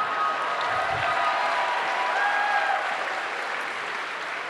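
Audience applauding, slowly dying down toward the end.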